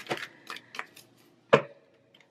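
Tarot cards being handled: a few light flicks and taps as cards jump from the shuffled deck, then one sharp slap about one and a half seconds in as cards land on the table.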